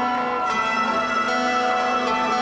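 Electronic keyboard playing the slow opening of a ballad: sustained notes ringing over one another, with a new note coming in every half second to second.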